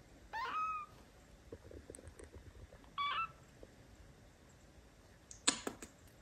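A very young kitten mewing twice, two short high calls about three seconds apart, the first rising in pitch and then holding steady. Shortly before the end there is a brief patch of soft clicking and rustling.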